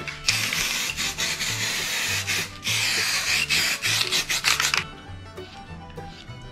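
Aerosol spray-paint can spraying in a steady hiss for about four and a half seconds, with a brief break about halfway, cutting off sharply near the end. Background music with a low bass line runs underneath.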